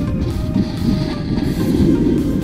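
Background music over the low rumbling scrape of a plastic sled sliding fast down packed snow, getting louder as it picks up speed.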